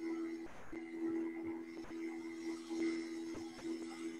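Faint background music from a shared video heard over a webinar's audio: a steady sustained drone of two low tones, cutting out briefly a few times.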